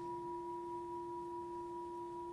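A singing bell (a meditation singing bowl) ringing on with a steady, sustained tone: a strong low note with a higher, fainter ring above it.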